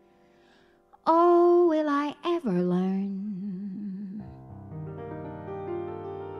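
A piano chord fades away, then a woman sings a short, loud phrase that drops to a low note held with vibrato. Piano chords with a bass line come in about four seconds in and carry on.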